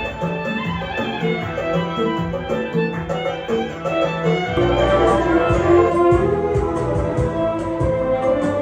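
Electric violin playing a melody over a recorded accompaniment with a repeating bass line. About four and a half seconds in, the accompaniment grows fuller and louder, with heavier bass and a steady high ticking beat.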